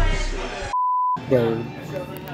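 A single short, steady electronic bleep tone, under half a second long, dubbed in over total silence: a censor-style edit bleep. Background music fades out just before it, and a man's voice follows right after.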